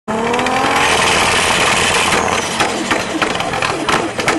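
Tuned 700 hp Nissan Skyline R32 GT-R engine revving, its pitch rising for about two seconds, then a rapid string of exhaust pops and crackles.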